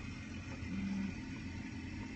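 Steady low background rumble of room tone, with one short low hum a little before the one-second mark.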